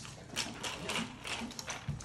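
A quick series of sharp plastic clicks, six or so in under two seconds, as a clear plastic lid is worked onto the rim of a paper drink cup.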